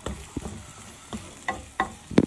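Chicken wings, sliced onion and garlic sizzling as they sauté in a pan, stirred with a wooden spatula that knocks and scrapes against the pan several times.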